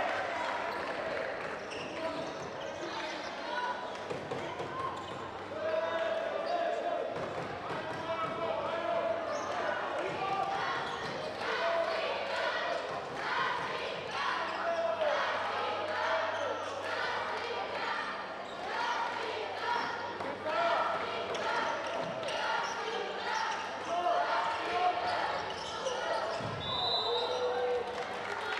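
A handball bouncing on the wooden court of an echoing sports hall, amid players' shouts and voices. Near the end there is a thud, then a short high whistle blast.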